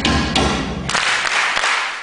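Djembe struck with hand and stick in a few loud strokes about half a second apart, with an audience clapping back the same beats.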